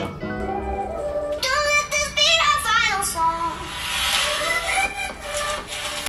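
A song with a high sung melody played through the single loudspeaker of a Realme 5 Pro smartphone at maximum volume. The sound is of middling quality, with no rattle or distortion at full volume.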